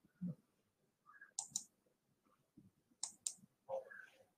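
Faint computer mouse clicks, two quick pairs about a second and a half apart, as playback of a recording is started.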